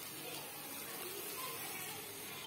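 Faint, steady sizzle of soya chunks frying in spiced masala in a kadai.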